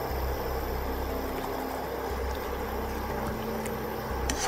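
Watery chilli-bean sauce with mince simmering in a non-stick wok while a slotted spatula stirs through it, a steady soft bubbling hiss with a low hum underneath.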